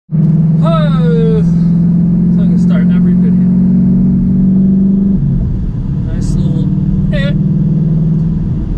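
Car engine and road noise heard from inside the cabin while driving: a steady low drone that drops off about five seconds in and picks up again about a second later. A man's voice speaks in short bursts over it.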